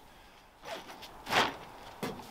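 A brief rustle of fabric, loudest in a short burst about a second and a half in.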